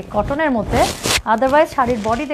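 A cotton saree being swung over the shoulder, its fabric giving one sharp half-second rustling swish near the middle. A woman keeps talking on either side of it.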